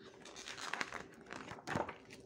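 Paper pages of a large printed book being turned by hand, rustling for about a second and a half and loudest near the end as the page comes over.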